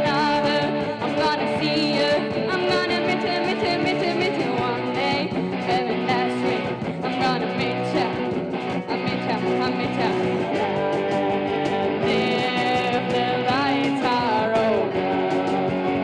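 A girl singing a pop-rock song live into a microphone, with instrumental accompaniment.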